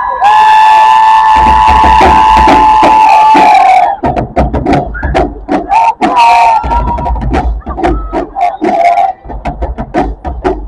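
High school marching band playing in the stands. The horns hold a loud chord for about four seconds, then the drums take over with a fast cadence of hits and deep bass-drum strokes, broken by short horn stabs.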